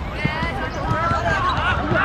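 Young players' voices shouting across a football pitch, growing louder toward the end, with a couple of dull thumps of the football being kicked.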